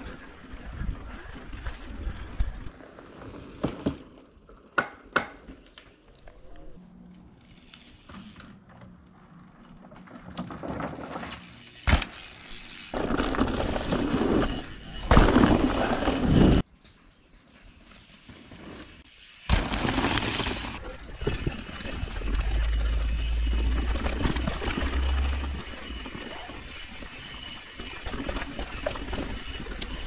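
Mountain bike riding over a dirt and rocky trail: tyres crunching on gravel and leaf litter, the bike rattling over bumps with sharp knocks and clicks. Loud stretches of noise come through near the middle, and wind rumbles on the camera's microphone for a few seconds in the second half.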